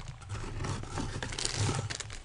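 Plastic packaging bags rustling and rubbing as a boxed camera accessory is handled and unpacked by hand, with a couple of soft bumps.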